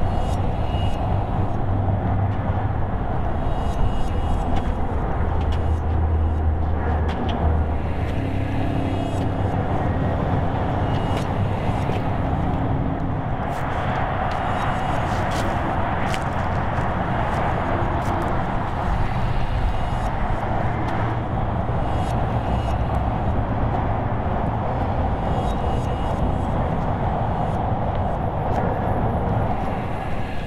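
Steady drone of road traffic from a nearby highway, with the hum of passing vehicles rising and falling.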